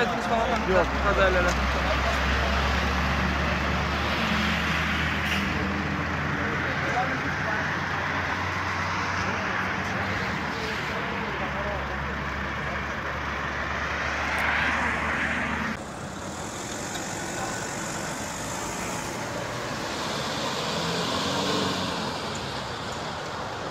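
Road traffic with a steady low engine hum running underneath. The noise swells about fifteen seconds in, then the low hum cuts off suddenly, leaving lighter road noise.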